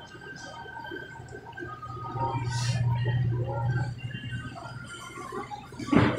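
Supermarket ambience: a steady low hum that grows louder for a couple of seconds in the middle, with faint background voices and a brief hiss.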